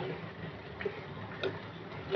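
Two light knocks of a wooden spatula against the pan while fish curry is being stirred, about a second apart, over a low steady hum.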